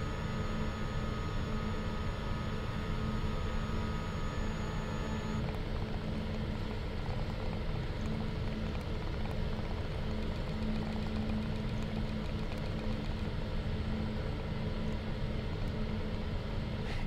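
The machine that mixes mistletoe summer and winter juices for Iscador concentrate running with a steady hum. Some of its higher tones drop out about five seconds in.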